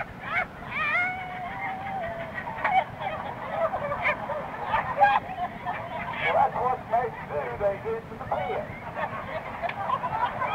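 A man telling a joke aloud, his voice bending in pitch and drawing out one long vowel early on, on a lap-held cassette recording with a low, steady rumble from the bus underneath.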